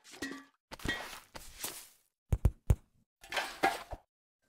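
Short noisy sound effects and knocks, with three quick thuds about two and a half seconds in.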